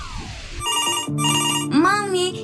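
A telephone ringing in two short bursts, a double ring, over a steady music bed. A falling sweep fades out about half a second before it, and a voice comes in near the end.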